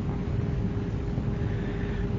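Steady background noise of a voice recording between sentences: an even hiss with a low rumble and a faint steady hum.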